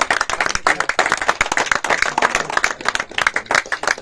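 A small crowd clapping by hand, rapid, irregular claps overlapping throughout.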